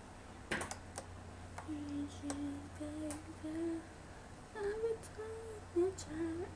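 A girl humming a tune softly with her mouth closed: a run of short held notes that steps up to a higher pitch about halfway through. A few sharp clicks come just before the humming starts.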